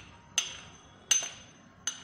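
Brass chakli press being closed: three sharp metallic clinks, about three-quarters of a second apart, each with a short high ring, as the brass parts knock together.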